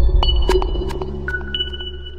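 Electronic sound-logo music: a deep bass tone slowly fading under sharp clicks and high, ringing ping tones, with new pings starting just after the beginning and again a little past a second in.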